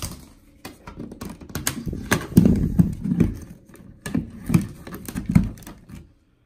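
Irregular clicks, knocks and low thumps of a vacuum and its cord being handled and plugged into a wall outlet, with no motor running. The thumps come in two clusters in the second half.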